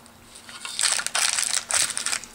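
Thin plastic candy wrapper crinkling as it is handled, starting about half a second in as quick, dense crackling rustles.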